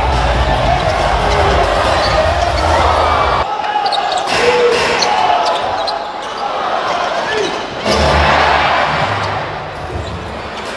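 Arena sound of a professional basketball game: crowd din and a ball being dribbled on the hardwood court. The low rumble of the crowd drops away abruptly about three and a half seconds in and comes back louder near the end.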